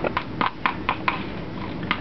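Beaver-tail spatula slapping and smearing pink alginate against the side of a mixing bowl, a quick wet smack with each stroke, about three to four strokes a second. The mix is a wet mix, made with too much water, and is shiny and runny.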